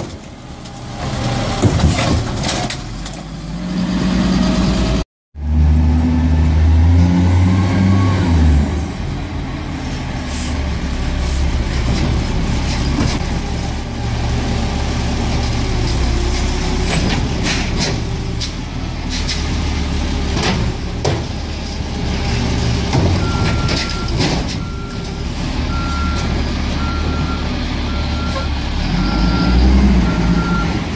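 Peterbilt 320 garbage truck's diesel engine idling steadily while its Amrep automated side-loader arm lifts and dumps recycling carts, with scattered knocks of the cart and lid. In the last several seconds a backup alarm beeps about once a second.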